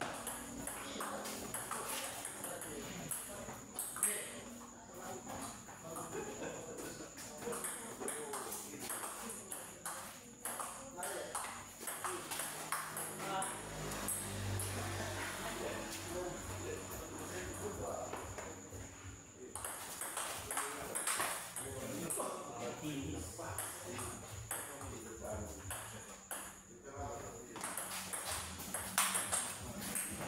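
Celluloid-type table tennis ball clicking off rubber-faced paddles and the tabletop in rallies, a quick irregular series of sharp ticks broken by short pauses between points.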